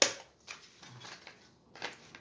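A sharp click right at the start, then two fainter clicks about half a second in and near the end: the small hinged first-aid tins being handled and set down on a table.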